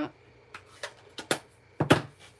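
A series of short sharp plastic clicks and taps from a Stampin' Pad ink pad case being handled, closed and set down on the desk, the loudest knock near the end.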